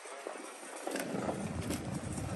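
Wind buffeting the microphone: a low, uneven rumble that comes in about a second in, over a steady hiss, with a few faint clicks.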